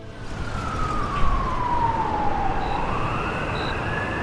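A siren wailing over steady traffic-like noise, its pitch falling slowly for about two and a half seconds and then rising again.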